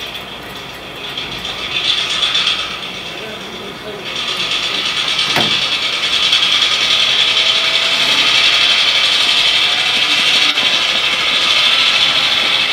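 WOWDiesel EMD diesel prime mover sound from a TCS DCC sound decoder in a model locomotive, played through its small speaker. About four seconds in the engine notches up and grows louder, then runs on steadily: the decoder's automatic load-based notching as the train works up a grade.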